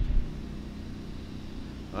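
Low, steady rumble of an idling engine, louder for a moment at the very start and then settling.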